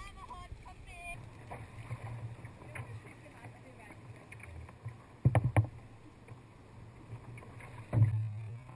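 Sea kayak being paddled through choppy water: water sloshing against the hull and paddle splashes, with a brief cluster of loud sharp knocks or splashes a little past the middle.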